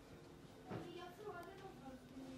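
Faint, indistinct voices of people talking in the background of a shop, starting a little way in.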